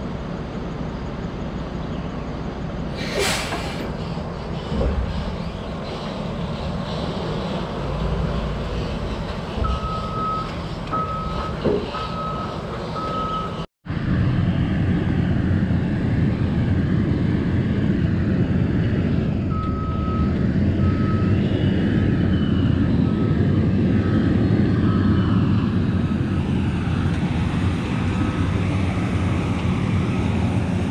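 Log skidder's diesel engine working with its backup alarm beeping in short even pulses as it reverses while blading a muddy logging road. The sound drops out briefly near the middle, and the engine is louder after it.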